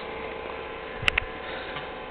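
Steady background hum and hiss with a faint steady tone, broken by a couple of short clicks about a second in.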